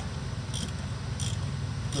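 Locking pliers scraping on a broken, heat-loosened motor-mount stud, three short metallic scrapes about 0.7 s apart, over a steady low hum.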